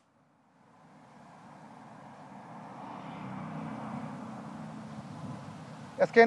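Road traffic: a passing motor vehicle's engine and tyre noise, growing louder, loudest about three to four seconds in, then easing slightly.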